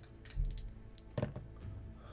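Two six-sided dice rolled into a dice tray: a few light clicks and a dull knock as they tumble and settle, within the first second or so.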